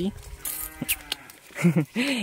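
A faint, drawn-out animal call in the background lasting about a second, with a short click partway through; a man's voice comes in briefly near the end.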